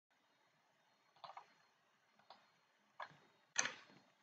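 Five short, sharp clicks from someone working a computer at the desk: a close pair about a second in, two single ones, and the loudest just before the end.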